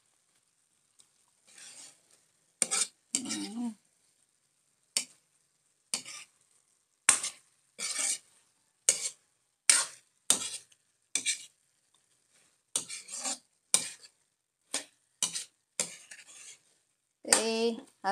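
A spatula scraping and turning sliced green papaya in a metal wok, in short strokes about once a second, over a faint sizzle of frying.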